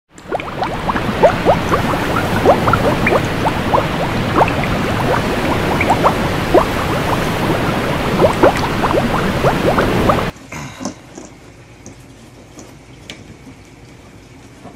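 Bubbling water, dense with short rising plops, that cuts off suddenly about ten seconds in; after that only a faint room sound with a few light clicks.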